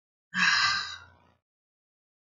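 A single sigh: one breathy exhale of about a second into a close microphone, loud at first and then trailing off.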